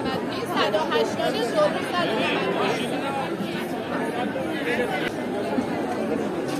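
A crowd of shoppers chattering, many voices talking over one another at a steady level.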